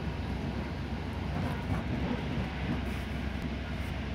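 Steady low rumble of a commuter train coach rolling on the track, heard from inside the car, with a few faint clicks from the wheels.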